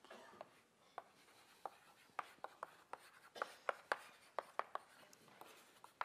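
Chalk writing on a blackboard: a faint, irregular run of sharp taps and light scratches as an equation is written out.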